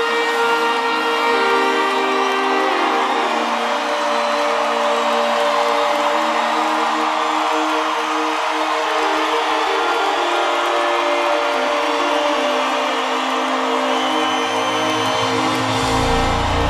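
Live band music with held, slowly changing chords and no singing; a low bass part comes in near the end.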